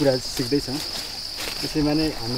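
A steady, high-pitched insect chorus: one continuous trilling buzz that holds at the same pitch throughout.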